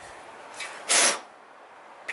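A single short, sharp puff of breath, a hissing rush of air about a second in.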